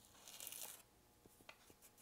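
Faint rustle of kinesiology tape and its paper backing as the tape is stretched tight and laid onto the skin, lasting under a second, followed by a few light ticks.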